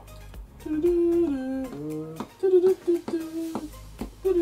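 A person humming a tune in held notes that step up and down, over low background music.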